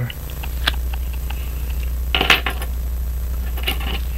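Small metallic clicks and clinks from tiny watch screws and tools being handled and set down: a single click, then a quick cluster of clinks about two seconds in, and one more near the end, over a steady low hum.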